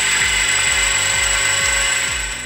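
Electric motor of a stirring cosmetics mixing vessel running steadily, a hiss with a constant high whine, over background music with a steady beat.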